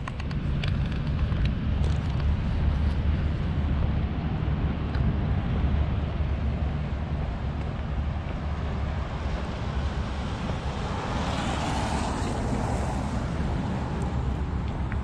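Wind buffeting the microphone, a steady low rumble. A car passing on the wet road rises and fades about eleven to thirteen seconds in.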